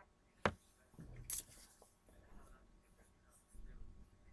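A sharp click about half a second in, then a brief scratchy rustle about a second later, with a few faint ticks over low room noise.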